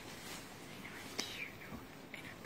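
Faint whispered voice, with a single sharp click about a second in.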